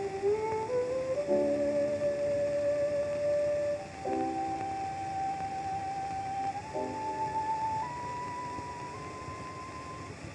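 Violin and piano on a 1909 acoustic recording: the violin plays a slow melody in long held notes that step upward over soft piano chords, with the steady hiss of the old recording underneath.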